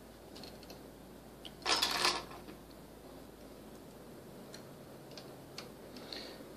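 Faint clicks and light rattles of plastic LEGO Bionicle pieces being handled and posed, with one brief louder rustle about two seconds in.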